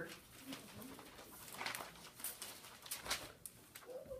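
Quiet classroom with a few faint strokes of a dry-erase marker on a whiteboard.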